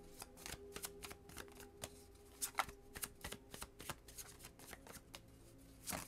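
A tarot deck being shuffled by hand: an irregular run of soft card flicks and clicks, with a few sharper snaps.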